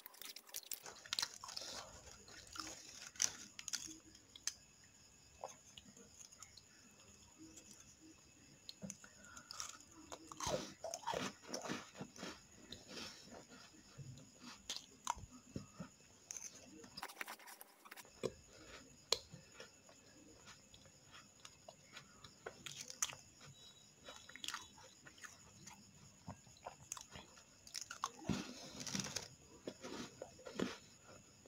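Crunchy cardamom-flavoured biscuits being bitten and chewed: a stream of faint, crisp crunches and clicks.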